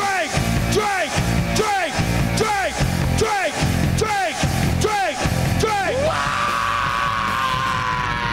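Live rock band playing loud, with short falling shouts on the beat, about one every 0.8 seconds. About six seconds in the shouts give way to one long held note that slides slowly downward.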